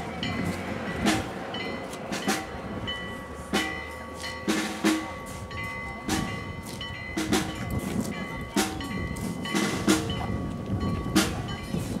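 Bells struck over and over at an uneven pace, about one stroke a second, their tones ringing on between strokes.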